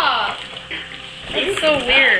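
A person's voice giving drawn-out exclamations that rise and fall in pitch, once at the start and again near the end, over rustling as a small cardboard box is opened by hand.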